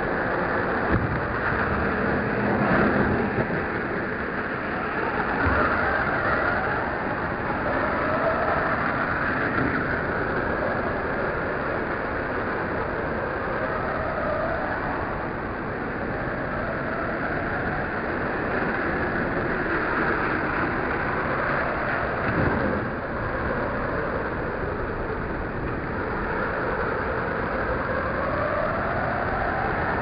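Radio-controlled car's motor whining up and down as it is driven around the dirt track, with a knock about a second in as it lands from a jump and another knock later on, over a steady rumble of traffic.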